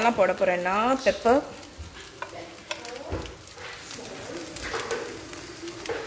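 Metal spatula stirring and tossing noodles in a wok, with scattered scrapes and knocks of metal on the pan over a light frying sizzle.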